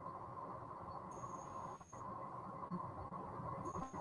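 Faint background hiss and hum of an online call's audio feed, with a faint steady tone and a faint high whine that comes and goes.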